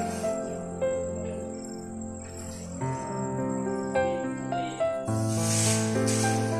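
Background music of held notes that change every second or so, with a hiss swelling up near the end.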